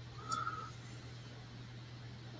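A short single-tone blip from the online poker software about a third of a second in, with a faint click at its start, over a steady low electrical hum.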